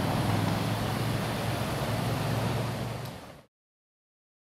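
A car engine runs with a steady low hum amid street noise, then fades out quickly about three and a half seconds in.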